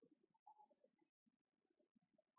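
Near silence: room tone, with a faint brief sound about half a second in.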